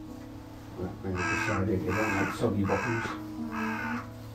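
A carrion crow giving four harsh caws in a row, starting about a second in, over quiet background music.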